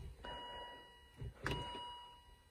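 Faint electronic chime, a steady high ding heard twice about a second and a quarter apart, each ding fading out.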